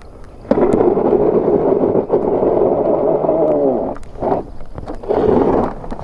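Daymak Pithog Max's tyres churning in loose gravel as it pulls away from a pole: one long spell of crunching and rumbling, then two shorter bursts.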